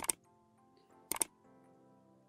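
Two sharp double clicks about a second apart over faint background music.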